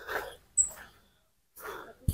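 Faint, short, heavy breaths of someone walking uphill, a few soft puffs with a pause about halfway through.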